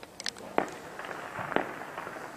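Two sharp explosive reports about a second apart, with smaller cracks just before the first, each trailing off in echo: the sounds of heavy shelling and fighting over a built-up area.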